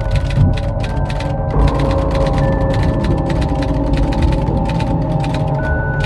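Dark, ominous background music of held chords that shift about a second and a half in, with irregular typewriter-key clicks, several a second, laid over it as a sound effect.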